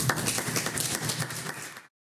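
Audience applauding, dying away and then cutting off suddenly near the end.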